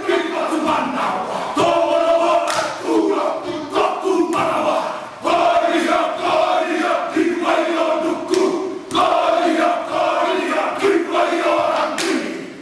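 A haka chanted by a group of men: loud, shouted chanting in unison, delivered in short forceful phrases.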